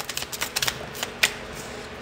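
Tarot cards being shuffled and drawn by hand: a scattering of short, light clicks and flicks as the cards slide and snap against each other.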